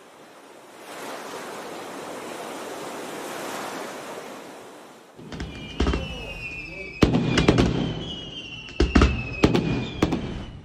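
A steady rushing noise for about five seconds, then an aerial fireworks display: about seven sharp bangs, with long high whistles that fall slowly in pitch.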